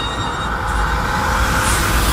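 Loud, steady mechanical rumble with a hissing whir, growing a little louder, from a rotating giant meat-grinder prop in a haunted-house attraction.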